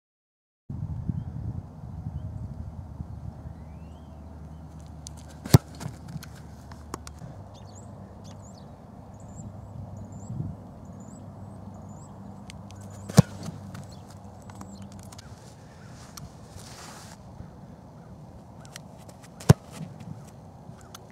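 Placekicker's foot striking an American football off a kicking holder: three sharp thumps of field goal kicks, about six to seven seconds apart, over steady outdoor wind noise with faint bird chirps.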